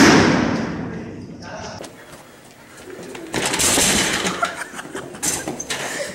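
A loud, sudden crash at the start that fades away over about a second and a half. It is followed a couple of seconds later by a noisy commotion with sharp clattering knocks.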